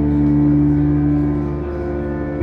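Live electronic music: a sustained synthesizer chord held on the keyboard over a deep bass note, with one of the lower notes dropping out near the end.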